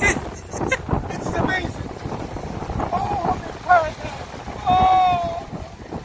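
A voice calling out wordlessly in short exclamations, then one long held call about five seconds in, over wind buffeting the microphone.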